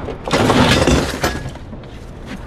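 Scrap metal crashing and clattering as it is thrown off a truck bed: one loud crash about a third of a second in that lasts about a second, with a brief metallic ring near its end, then quieter scraping and handling.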